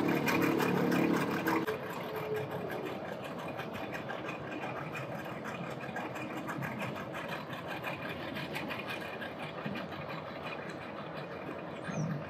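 Mercury 200 outboard motor on a small boat running as the boat moves away. It is louder for the first couple of seconds, then settles to a quieter, steady sound as it recedes.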